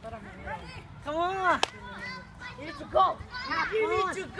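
Young players shouting and calling out to each other during a pickup soccer game on grass, loudest just after a second in and again about three seconds in, with a single sharp knock about one and a half seconds in.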